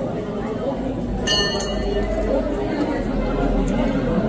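Many people talking indistinctly at once, a steady background chatter, with a brief metallic ring a little over a second in.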